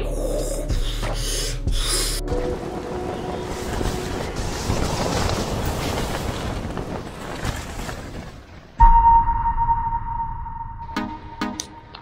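Gusty windstorm wind at night, a steady rushing noise over the microphone, with music underneath. Near the end, a loud steady high tone cuts in suddenly and holds for about two seconds.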